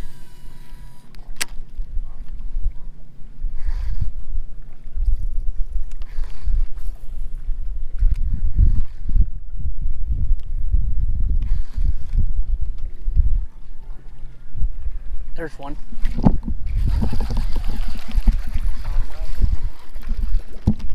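Low, uneven rumble of wind buffeting a body-worn camera's microphone, with water lapping against a fishing boat. A voice says a single word near the end.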